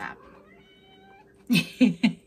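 A cat meowing once, a faint call that rises in pitch and then holds for about a second. Near the end a woman laughs.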